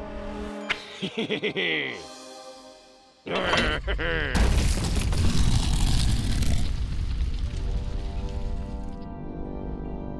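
Cartoon sound effects over the score: a few quick falling whistle-like glides, a short lull, then a sudden loud crash and rumble lasting a couple of seconds before the music comes back.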